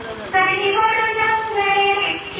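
A single high voice singing a slow, devotional-sounding song with long held notes, coming back in about a third of a second in after a short pause.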